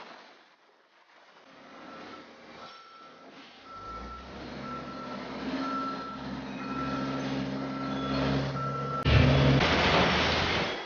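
A vehicle's backup alarm beeping at one pitch about once a second, over the low, steady drone of heavy machinery running. About nine seconds in, the beeping stops and the machinery noise jumps suddenly louder.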